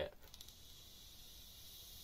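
Faint steady hiss of a Joyetech RunAbout pod vape being drawn on through its 1.2 ohm coil, with a few light clicks near the start.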